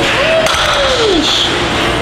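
A person's drawn-out 'ooh', falling in pitch over about a second, as a reaction to a heavy barbell hip thrust, over a steady wash of background music and gym noise.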